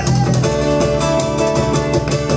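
Acoustic guitars strummed in a quick, even rhythm, part of a live band's song.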